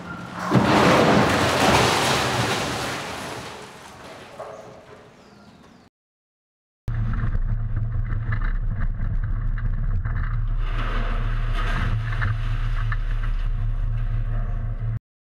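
A car speeding past with a loud rush that fades away over a few seconds. After a sudden cut, a car driving along a street: a steady low rumble of engine and road noise, heard close from a vehicle-mounted camera.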